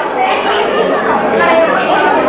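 Several people talking at once, their voices overlapping in chatter.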